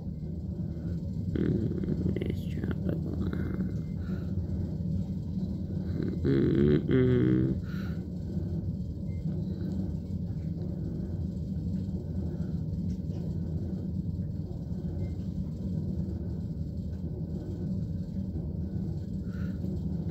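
A steady low rumbling hum, with one short laugh about six to seven seconds in.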